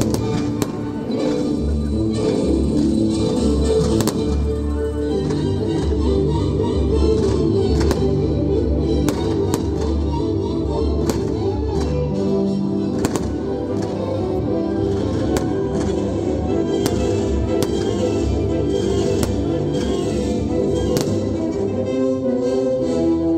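Music playing loudly, with sharp bangs of fireworks going off at irregular intervals throughout.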